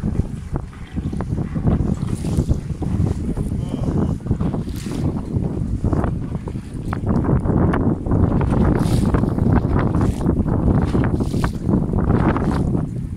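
Wind buffeting the microphone in gusts, over rushing and splashing water from boats moving through choppy sea.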